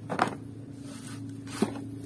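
Mud-covered hollow plastic toy dinosaurs clattering as they are handled in a plastic tub and set down on concrete: a quick cluster of clacks near the start and another short sound about a second and a half in, over a steady low hum.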